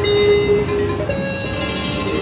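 VGT Mr. Money Bags reel slot machine playing its electronic bell-like chimes as the reels stop: a held tone that steps up in pitch about a second in, with two runs of bright ringing tones over it, the second near the end as the bonus round is triggered.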